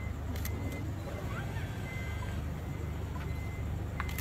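A van's engine idling, a steady low rumble, with a few faint clicks and a thin high beep that sounds on and off several times.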